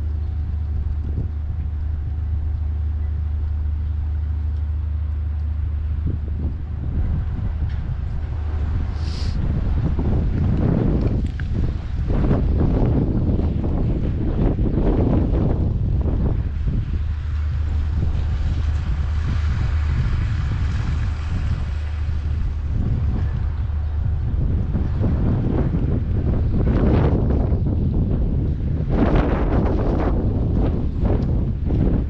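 Gusty wind buffeting the microphone: a steady low rumble with gusts swelling and fading, stronger from about a third of the way in.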